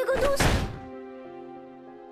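A hand slapped against a wall: one heavy thud about half a second in, over soft background music.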